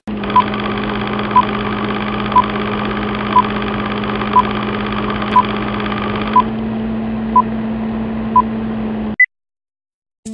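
A steady hum with a short beep about once a second, nine beeps in all. It thins out about two-thirds of the way in, ends with a brief higher blip, and cuts off suddenly.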